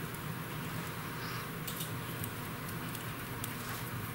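Quiet handling of an interchangeable circular knitting needle, its metal tip being fitted to the cable: a few faint clicks about halfway through, over a steady low hum.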